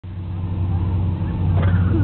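Truck engine running steadily with a low, even drone. A voice begins near the end.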